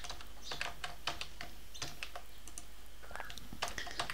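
Computer keyboard typing: a quick, irregular scatter of light key clicks.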